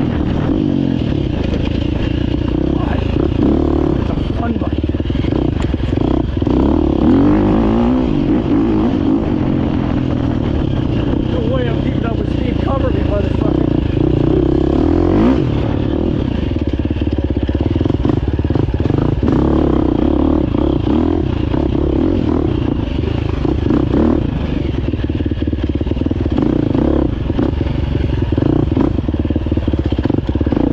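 GasGas EC350F's 350 cc single-cylinder four-stroke engine running under load as the dirt bike is ridden, its pitch rising and falling with the throttle throughout.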